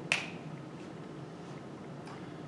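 A single sharp click just after the start: a dry-erase marker's cap snapped shut. After it there is only a faint steady room hum.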